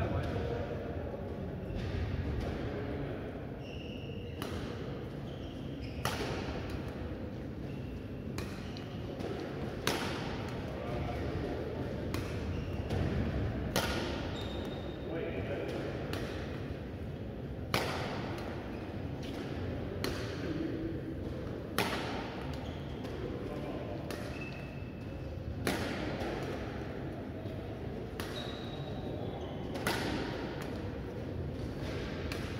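Badminton rackets striking a shuttlecock in a steady rally, a sharp crack about every two seconds, ringing in the reverberant hall, with occasional brief shoe squeaks on the court floor.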